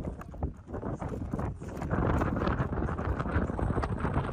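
Wind buffeting the microphone, louder from about two seconds in, over irregular crunching knocks.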